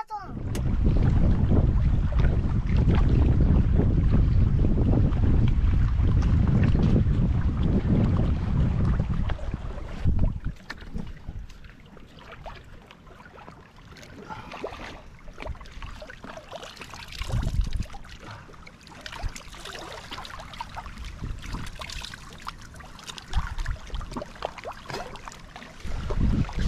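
Wind buffeting the microphone in a loud low rumble for about the first ten seconds, then dropping away to lake water lapping among shore rocks, with splashing as hands dip into the water.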